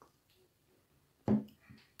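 Quiet room, broken about a second and a quarter in by one short vocal sound from a person, a brief syllable or murmur.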